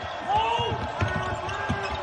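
Basketball game court sounds: the ball bouncing on the hardwood floor with a few short, high sneaker squeaks as players cut, and a brief voice early on.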